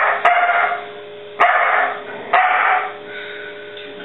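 A dog barks four times in answer to "two plus two", the first two barks close together and the last two about a second apart. This is a counting trick.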